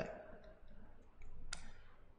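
A stylus on a tablet while handwriting: faint scratching and tapping, with one sharp click about one and a half seconds in.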